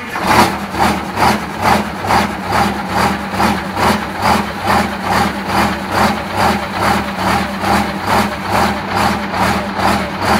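GM PD4501 Scenicruiser bus's diesel engine idling, with a steady pulsing beat a little over twice a second; the bus has not run in five years.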